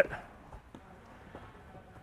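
Quiet room tone with a few faint, short clicks, right after the last word of a man's spoken instruction.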